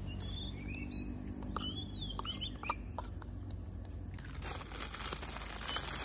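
Birds chirping in short rising and falling calls, then, from about four seconds in, the crinkling of a plastic instant-noodle packet being handled.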